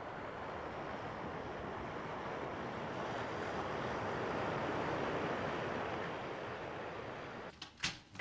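Ocean surf washing onto a sandy beach: a steady rush of breaking waves that swells slowly toward the middle and eases off again. It cuts off shortly before the end, leaving a couple of brief clicks.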